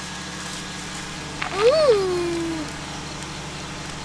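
Steady drone of a generator supplying electricity, a low hum with a fast even pulse. About one and a half seconds in, a single drawn-out voiced call rises and then slides down in pitch over about a second.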